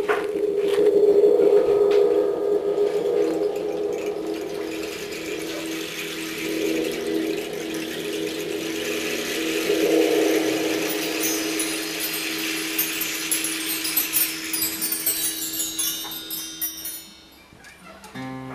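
Percussion intro on bar chimes: a long low ringing tone sounds throughout, and from about six seconds in a high shimmer of the chimes swept by hand builds over it, then dies away near the end.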